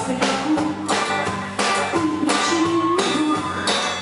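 Live rock-folk band playing an instrumental passage between sung lines: strummed guitar, electric bass guitar, and a flute playing held notes.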